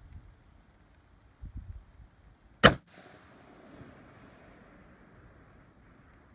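A single scoped rifle shot about two and a half seconds in, its report followed by a long echo that fades away over several seconds.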